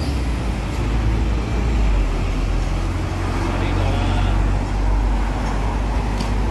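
Street traffic: a steady low rumble of road vehicles running nearby.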